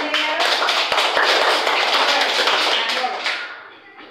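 A room of schoolchildren applauding: many hands clapping at once, starting abruptly, holding loud for about three seconds, then dying away.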